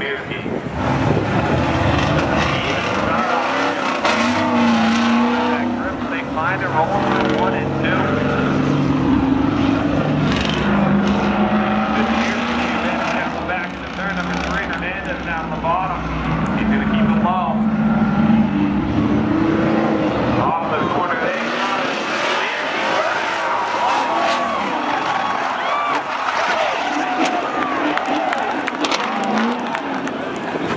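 Two street cars racing side by side at full throttle, their engines revving, the pitch climbing and dropping again as they pull through the gears, with some tire squeal.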